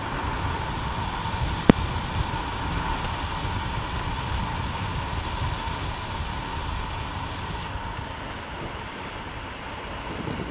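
Wind rushing over a handlebar-mounted camera's microphone and bicycle tyres rolling on asphalt while riding, a steady low rumble with a faint steady whine. One sharp click comes just under two seconds in.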